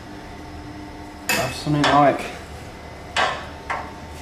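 Metal parts clanking and clinking as they are handled: one sharp clank about a second in, another about three seconds in, and a lighter clink just after it.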